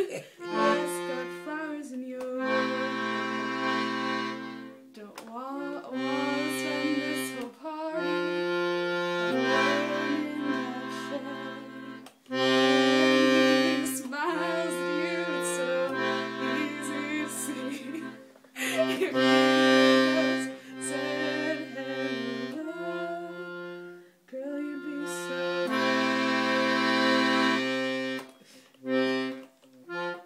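Piano accordion playing a slow chord accompaniment: held chords over bass-button notes, changing every one to three seconds with short breaks for the bellows between phrases.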